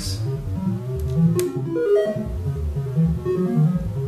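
Eurorack modular synthesizer voice playing a run of short, plucked-sounding notes that jump to random pitches a few times a second. The pitches are stepped voltages from a sample-and-hold sampling filtered pink noise.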